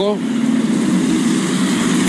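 A heavy dump truck's diesel engine running steadily as the truck drives slowly past, a constant low drone.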